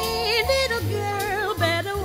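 Female jazz singer scat-singing a wordless line that bends and wavers with vibrato, over a swing band accompaniment.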